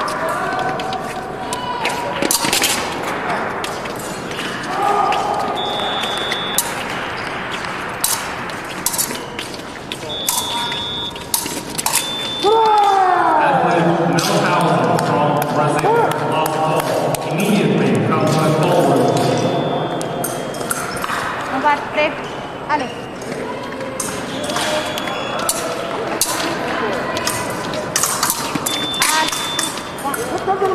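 Épée bout sounds in a large echoing hall: repeated sharp clicks and clatters of blades and feet on the metal piste, with short high beeps now and then. About twelve seconds in, a loud shout falling in pitch comes around a scored touch, and voices carry in the background.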